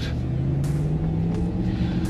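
Inside the cabin of a GMC Hummer EV setting off on an off-road test: a low rumble with a steady hum whose pitch rises slightly over the first second and a half.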